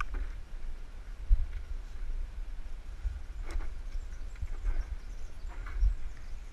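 Footsteps on a steep dirt trail, picked up through a body-worn action camera: a low rumble from the camera being jostled, with irregular thumps as each step lands. The heaviest thumps come about a second in and near the end.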